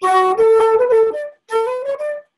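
Keyed wooden Irish flute playing a single jig rhythm, a phrase of about a second, then a short break and a fresh start of notes. It is a fumbled demonstration that the player apologises for and later calls a mistake.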